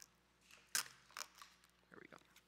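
Clear plastic film on a prepackaged communion cup crinkling as its top seal is peeled back to get at the wafer: a few short crackles, the loudest a little under a second in.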